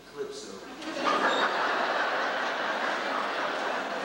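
Audience applauding, starting suddenly about a second in and holding steady.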